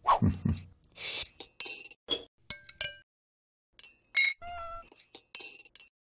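Breakfast tableware clinking: a scatter of short taps of glasses and cutlery, several ringing briefly like glass.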